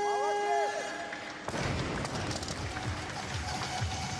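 A steady electronic buzzer tone, the down signal marking a good lift, sounds for about a second and a half. About a second and a half in, the loaded barbell drops onto the platform and bounces, and crowd applause and cheering carry on from there.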